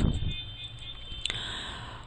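Low steady microphone hum and hiss, with a single sharp keyboard key click a little over a second in as a word is typed.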